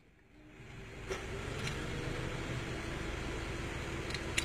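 Car engine idling, heard from inside the cabin as a steady low hum that fades in during the first second. A couple of light clicks come early on.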